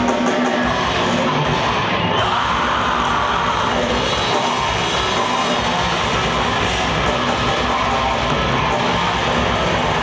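Death metal band playing live through a club PA: distorted electric guitars, bass and fast drumming in a dense, loud wall of sound.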